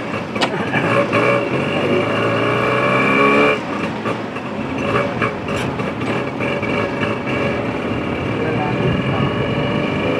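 Tuk-tuk's small engine revving as it pulls away, its pitch climbing, then dropping back sharply about three and a half seconds in and climbing again as it drives on.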